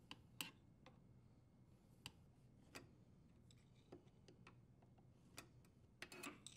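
Near silence with about five faint, scattered clicks: a flat-blade screwdriver working a dishwasher's front leveling leg, its tip catching on the leg.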